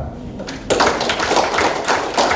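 A roomful of people clapping, breaking out suddenly a little under a second in and going on steadily.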